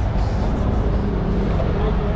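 Traffic running by in the adjacent lanes, with a city bus passing close, a steady low rumble. Passers-by's voices are heard faintly.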